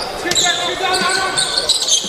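A basketball being dribbled on a hardwood gym court during live play, with voices around the court.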